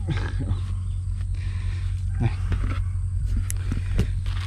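A steady low hum, with a few light rustles of a plastic bag being handled.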